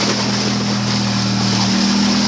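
Polaris Sportsman 850 ATV on rubber tracks running steadily while towing, its engine holding an even note with a steady rushing noise underneath. A lower part of the engine note drops away near the end.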